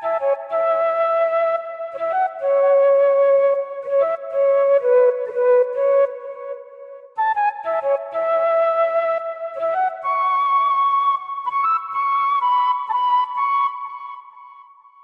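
A software flute preset in Arturia Analog Lab 4 plays a slow counter melody one note at a time, played dry without effects. The phrase starts over about seven seconds in, and its last note is held and fades near the end.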